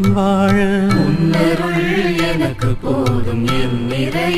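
Tamil Christian devotional song (bhajan) in a Carnatic style: a voice sings a held, wavering melodic line over steady instrumental accompaniment.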